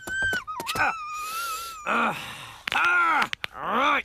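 A cartoon old woman's angry, wordless vocal groans: three short sounds in the second half, each rising and then falling in pitch. Before them, a high wavering whistle-like tone runs for about the first two seconds.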